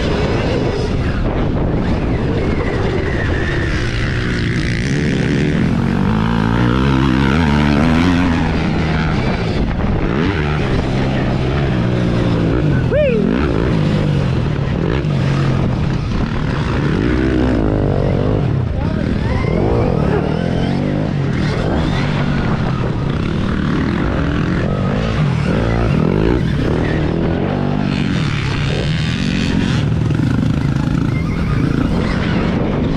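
Motocross ride on a Stark Varg electric dirt bike, heard from the rider's camera: steady wind and track rush. Over it, motorcycle engine pitch keeps rising and falling as the throttle opens and closes.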